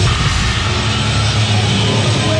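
Heavy metal band playing live: drum kit with rapid low bass-drum strokes under distorted guitars and bass, one dense, loud, unbroken wall of sound.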